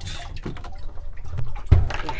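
Water sloshing and dripping as a large block of ice is hauled up out of a water-filled ice bath, with a dull thump near the end.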